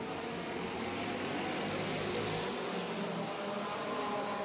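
Race cars lapping a dirt oval track, their engines a steady, dense drone heard from the grandstand, swelling briefly about two seconds in as the pack comes around.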